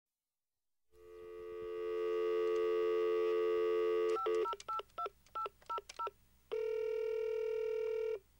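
Telephone call sounds: a landline dial tone fades in and holds steady, then about seven touch-tone (DTMF) key beeps are dialled, then a steady ringback tone starts about six and a half seconds in as the call rings through.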